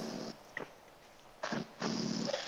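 A pause with faint room tone, then a short rush of noise about one and a half seconds in. Just before the end, a louder, duller hiss of breath or line noise comes up: the audio of the remote video link opening before the guest speaks.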